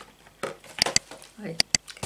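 Two pairs of sharp clicks, each a quick double click, a little under a second apart, with a brief exclamation between them.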